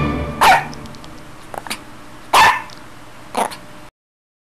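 Shih tzu giving three short, loud barks, spaced a second or so apart, with a couple of faint yips between the first two; the sound cuts off abruptly near the end.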